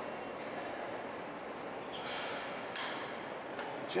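Steady background noise of a large indoor exhibition hall, with a brief sharp hiss-like noise a little under three seconds in.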